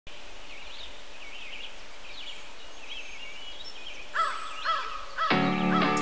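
Outdoor ambience with small birds chirping, and louder bird calls from about four seconds in. Near the end an electric guitar chord comes in and rings on as the song starts.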